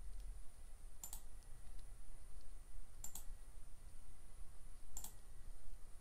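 Faint clicks, each a quick double, coming about every two seconds over a low steady room hum.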